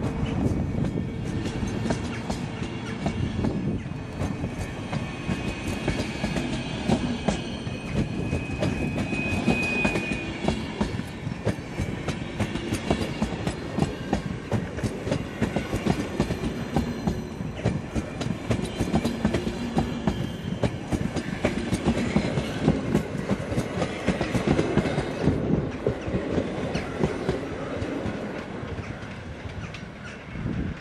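Passenger coaches of a departing express train rolling past, their wheels clicking over rail joints in a dense steady rhythm, with a brief high tone about nine seconds in. The sound falls away near the end as the last coach goes by.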